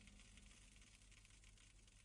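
Near silence: a faint hiss with a low hum.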